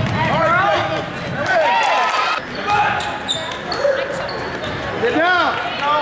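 Basketball game on a hardwood gym floor: the ball bouncing, sneakers giving short squeaks, and voices from players and spectators, echoing in the hall.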